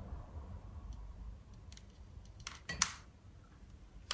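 A few faint clicks from a lighter as it lights a tealight in a ceramic wax melt burner, the loudest about three-quarters of the way in.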